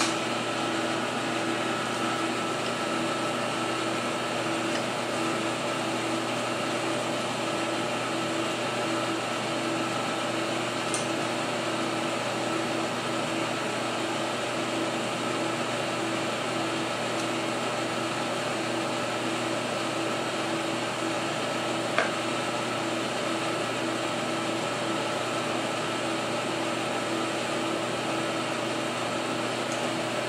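Steady mechanical hum, its low tone pulsing evenly, with a single short click about 22 seconds in.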